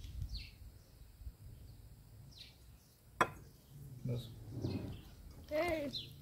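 Faint outdoor background noise with a few short bird chirps and a single sharp click about three seconds in. Brief speech follows near the end.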